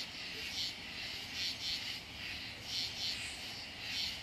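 Insects chirping in short, high, buzzy pulses that repeat about once a second, some in close pairs.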